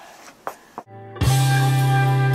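Fender Stratocaster electric guitar: faint string noise and a click, a brief dropout, then a loud chord struck just over a second in and left ringing.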